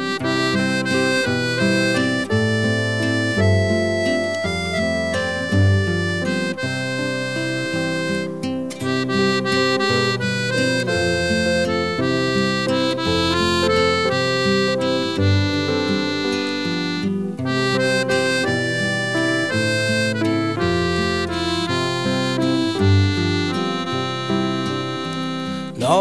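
Instrumental break in a Danish folk song: a held lead melody plays over a bass line, with no singing.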